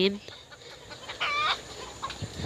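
A chicken calling once, a short high-pitched squawk a little after a second in.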